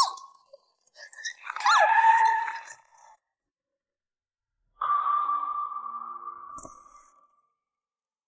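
A short, voice-like cry with a bending pitch. After a pause comes a sustained ringing tone that fades away over about two seconds, with a single dull thud near its end, fitting a film sound-effect accent for a dramatic entrance.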